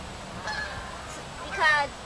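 Geese honking, with a faint call about half a second in and a loud honk near the end.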